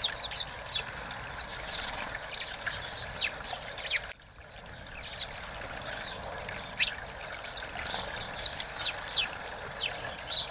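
Water trickling steadily from a fountain spout into a stone bird bath, with sparrows chirping in short, high, downward-sweeping notes throughout. The sound dips briefly about four seconds in.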